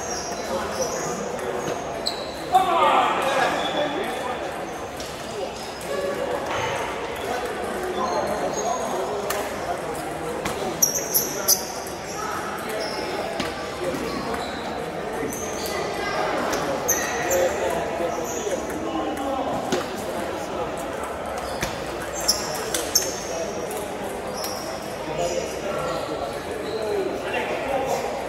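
Table tennis ball clicking off paddles and the table in short runs of quick rallies a few seconds apart, over the steady chatter of a busy sports hall.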